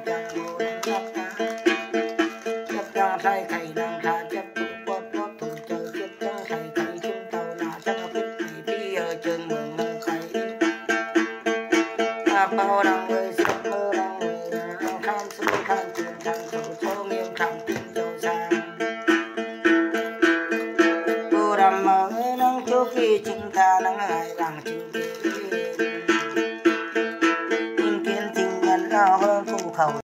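Then ritual music on a plucked lute, most fittingly the Tày–Nùng đàn tính, played continuously with quick, even plucking over a steady ringing tone.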